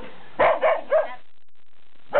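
A dog barking three times in quick succession, within the first second.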